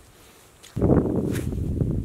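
A vehicle engine running, cutting in abruptly about three-quarters of a second in after a quiet start.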